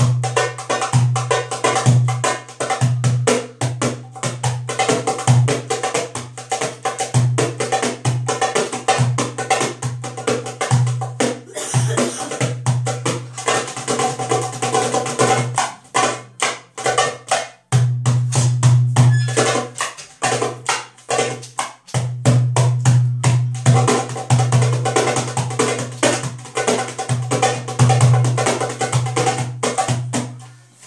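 A darbuka (goblet drum) played by hand in fast, dense rhythms, deep bass strokes mixed with sharp rim strokes, with a few short breaks about twelve, seventeen and twenty-one seconds in.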